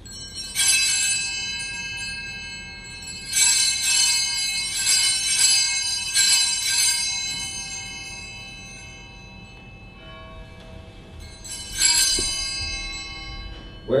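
Altar bells (sanctus bells) rung in the sanctuary for the elevation of the chalice just after the consecration of the wine. One ringing shake, then a run of several shakes about three to seven seconds in, and one more near the end, each left to ring out.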